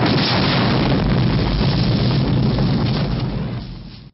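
Explosion sound effect: a sudden loud blast that carries on as a rumble for several seconds, fading away near the end.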